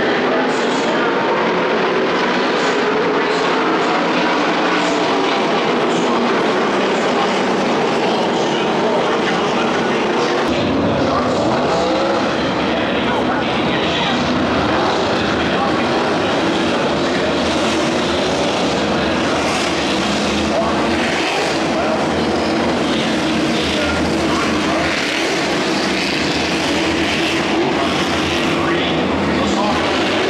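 Several NASCAR race engines running at once, a steady overlapping drone of V8s on track, with voices mixed in. A deeper low rumble joins about ten seconds in.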